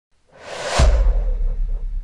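Logo intro sound effect: a whoosh swells for about half a second into a sudden deep bass hit, which rings on and slowly fades.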